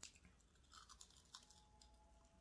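Faint, close-miked bites and chewing of a battered, fried corn dog on a skewer, with a few short crisp crunches.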